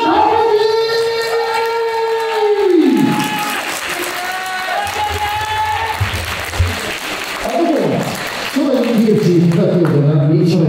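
A ring announcer's amplified voice calling out in long, drawn-out tones. One held call falls away about three seconds in and shorter held calls follow, over crowd applause in a reverberant hall.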